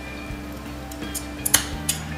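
Steel fabric scissors snipping notches into a fabric seam allowance: two or three quick sharp snips about one and a half seconds in, over steady background music.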